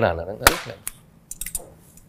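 A man's voice trailing off, then a sharp click about half a second in, a smaller one shortly after, and a quick run of fainter clicks around a second and a half in.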